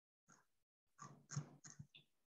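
Near silence, with a few faint short sounds around the first and second seconds.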